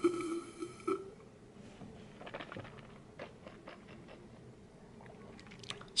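A man sipping black coffee from a glass mason jar: a steady pitched slurping sound for about the first second, then faint swallowing and lip-smacking clicks as he tastes it.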